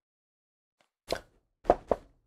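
Three short, soft pops in the second half, otherwise near silence.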